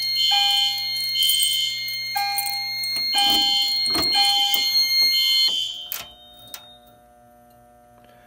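Fire alarm sounders blaring in a repeating pulsed pattern of high tones, with a couple of clicks partway through. The alarm cuts off about six seconds in as the control panel is silenced.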